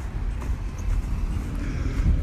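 Steady low rumble of city street noise, with no distinct separate events.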